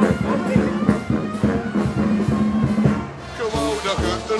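Loud carnival band music with a steady drum beat and brass, with crowd voices underneath. The music drops away briefly about three seconds in and then comes back.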